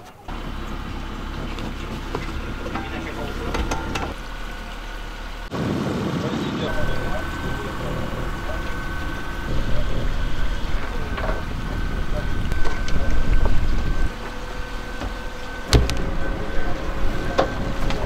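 A 10 horsepower Yamaha outboard motor runs steadily, driving a small catamaran over calm water, with a steady whine through most of it. Some voices are heard faintly in the background.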